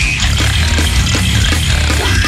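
Extreme metal music: heavily distorted guitars and bass over fast drumming, loud and dense throughout.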